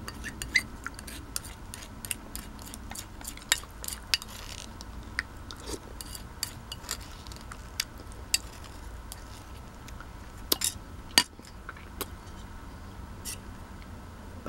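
A spoon clinking and scraping against a ceramic bowl as the last of the porridge is spooned up: many small sharp clicks, with a few louder knocks about ten to eleven seconds in.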